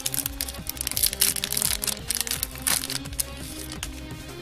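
Foil Pokémon booster pack wrapper crinkling with sharp crackles as it is torn open and the cards are slid out, over background music.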